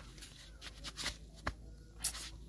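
Rubber slide sandals being handled and set down on dry dirt: a few faint, sharp taps and clicks, one at the very start and another about a second and a half in.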